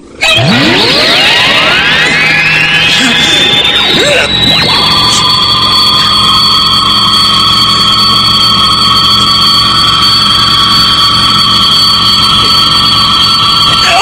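Electronic sci-fi sound effect of an energy beam: a whine that sweeps upward over the first four or five seconds, then settles into a steady, high, ringing electronic tone held to the end.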